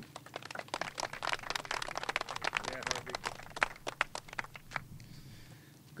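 Small crowd clapping, dying away about four and a half seconds in, with papers rustling at the podium microphone.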